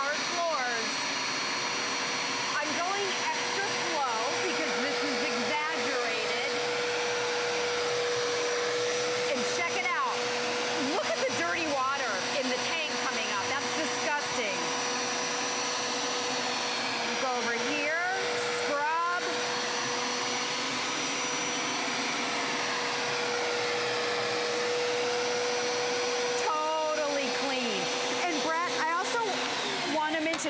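Hoover Power Scrub Elite carpet and floor cleaner running on tile, with a steady motor and suction whine and a constant tone. Its spinning brushes scrub the hard floor with clean water while it vacuums the dirty water back up.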